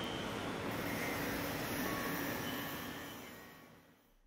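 A steady, quiet noisy background with a few faint lingering tones, the tail of the video's soundtrack, fading out over the last second or so.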